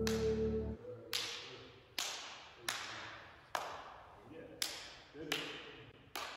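Series of sharp hand slaps, about seven roughly a second apart, each ringing out in a long echo. A music bed underneath stops about a second in.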